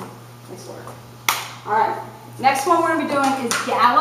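A person speaking in a tiled hallway, with one sharp smack about a second in.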